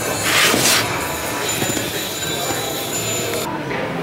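A cardboard microphone box scrapes briefly against a store shelf as it is handled, about half a second in. A steady din of store background noise runs underneath.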